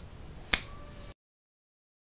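A single finger snap about half a second in, over faint room tone; the sound cuts off abruptly about a second in.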